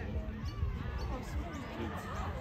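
Several voices talking and calling out over one another, with a low, irregular rumble underneath.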